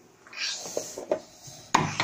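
A toddler's high-pitched, drawn-out vocal sound, followed near the end by a sharp knock and more voice.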